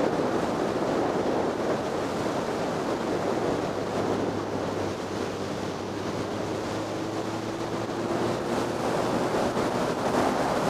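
Wind rushing over the microphone of a motorcycle at road speed, a steady roar, with the engine faintly underneath; its note rises slightly in pitch in the second half.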